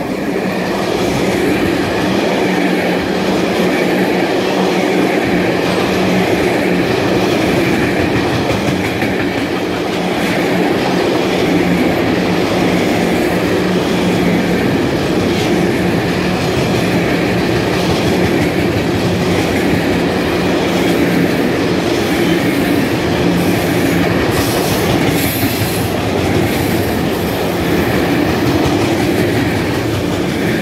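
An EVB Siemens ER20 diesel-electric locomotive passing close by with a long freight train of loaded timber wagons, its engine heard at first, then the steady rolling rumble and clatter of the wagons' wheels on the rails.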